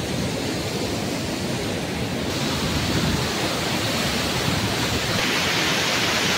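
Steady rushing of a waterfall and river rapids pouring over rock, getting a little louder and brighter toward the end.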